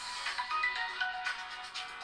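Samsung Galaxy Tab 2 playing its ringtone, a melody of short high notes, set off remotely by Find My Device's Play Sound.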